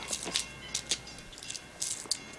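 A few faint, short clicks and rustles, about five scattered through two seconds.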